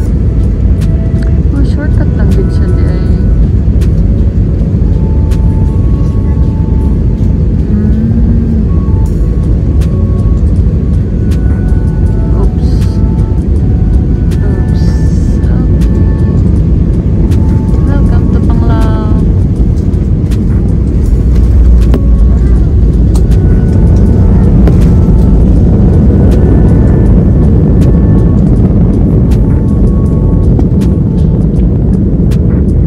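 Airliner cabin noise: the steady roar of jet engines and airflow heard from inside the cabin, growing louder about twenty seconds in.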